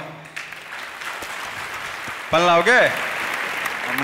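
Audience applause in a large hall, building up gradually, with a man's voice briefly rising over it a little past halfway.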